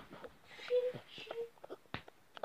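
A young girl whimpering as she cries, with two short moaning sounds in the middle.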